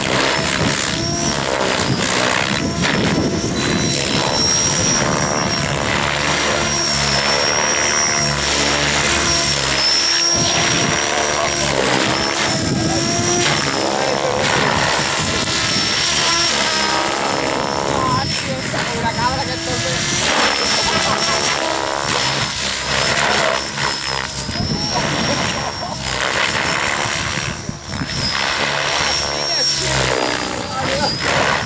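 Radio-controlled model helicopter in aerobatic flight, a high whine from its rotors wavering slightly in pitch as it manoeuvres.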